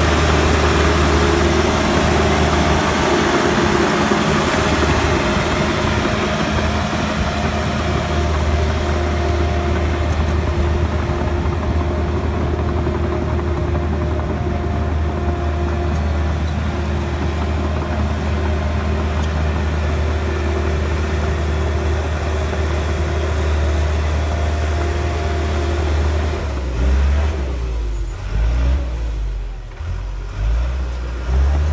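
John Deere 650J crawler dozer's diesel engine running steadily as the machine works and travels on its steel tracks, loudest at first and slowly fading as it moves away. Near the end the steady engine note breaks off into uneven low rumbling.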